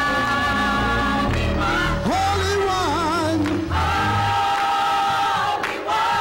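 Gospel choir singing with a band: the choir holds sustained chords over a moving bass line, and a solo voice sings a wavering line with wide vibrato about halfway through, between the choir's phrases.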